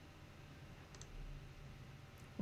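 A single faint computer-mouse click about a second in, over near-silent room tone with a low hum.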